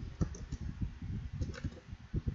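Computer keyboard being typed on: an uneven run of quick key clicks.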